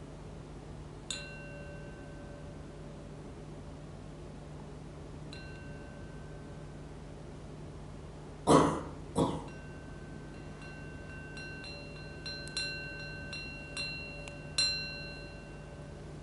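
Small meditation bell struck to end a meditation: a single strike about a second in, another about four seconds later, then a run of quick, lighter strikes in the second half, each ringing out with the same bright, high tones for a second or so. Two loud coughs fall between the second strike and the run.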